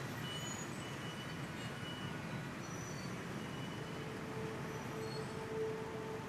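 Steady low rumble of a motor scooter engine running at idle with street traffic around it; a faint held tone comes in about four seconds in.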